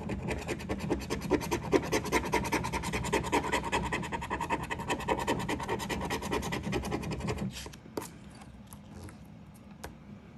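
A plastic scratcher scraping the coating off a paper lottery scratch-off ticket in rapid back-and-forth strokes, clearing the boxes of a play area. The scraping stops about seven and a half seconds in, leaving a few faint ticks.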